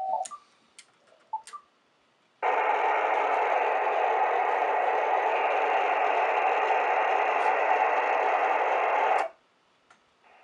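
Ham radio receiver's speaker giving a steady rush of static with no carrier tone in it, switched on about two and a half seconds in and cut off abruptly near the end. The receiver has been set to the 10-meter band and has not yet picked up the VFO's signal. A few faint clicks come before the static.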